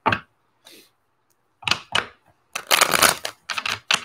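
A tarot deck being shuffled by hand: several short bursts of cards clicking and slapping against each other, with short pauses between, the longest burst a little under three seconds in.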